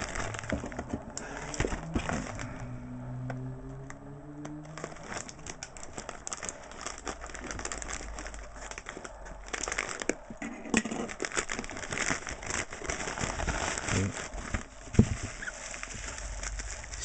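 Plastic packaging crinkling and crackling as a padded bubble mailer and a bubble-wrapped package are handled and unwrapped, with many small irregular crackles.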